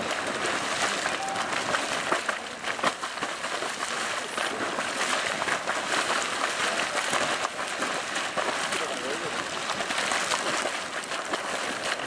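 Bulger's Hole Geyser erupting: hot water splashing and spattering up out of its pool without a break, with many sharper splashes as bursts break the surface.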